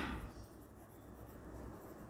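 Pen writing on notebook paper, faint.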